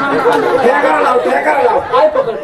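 Several voices talking over one another in loud, overlapping chatter.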